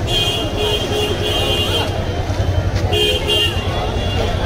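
A vehicle horn sounding in short repeated toots, four in quick succession and then two more about three seconds in, over the chatter of a large crowd.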